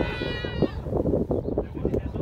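A player's high-pitched shout: one drawn-out call of about a second that falls slightly in pitch at its end. It sits over steady low background noise and distant chatter.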